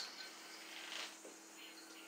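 Faint sounds of a yo-yo being played, the spinning yo-yo and its string just audible over a low steady hum, with a sharp click at the very start.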